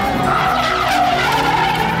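Car tyres squealing in a long, wavering screech as a modified car slides through a corner, with its engine running underneath.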